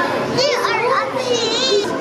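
Children's voices and chatter from a crowd of visitors, with a child's high, wavering squeal near the middle.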